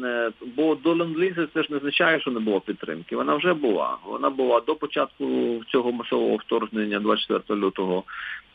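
Speech only: a man talking continuously in Ukrainian.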